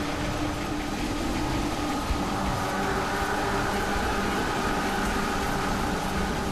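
Steady noise of a wastewater treatment plant: water running and churning, with a steady machinery hum in it.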